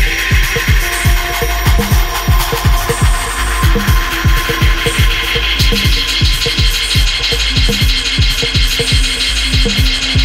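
Minimal electronic microhouse track: a steady, even pulse of low drum hits over a constant deep bass, with a hiss of noise texture and thin sustained high tones on top.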